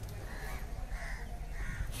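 Three faint, short bird calls about half a second apart, over a steady low background rumble.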